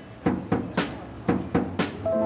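Music with a drum beat: sharp strikes in groups of three, the group repeating about once a second.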